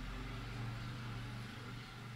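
Faint steady background noise: a low electrical-sounding hum with a light hiss, with nothing else happening.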